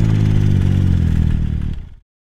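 Stage 2 tuned Yamaha Sidewinder snowmobile's turbocharged three-cylinder engine running hard at high revs, its note sinking slightly, then fading out near the end.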